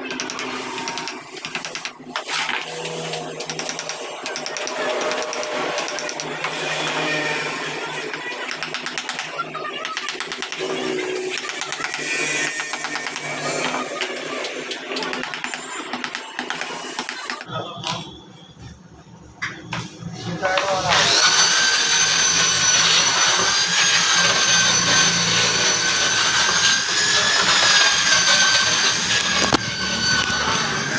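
Wooden mallet striking a chisel into a carved wooden panel in irregular taps. After a short lull about two-thirds in, an electric angle grinder starts and runs at a steady pitch.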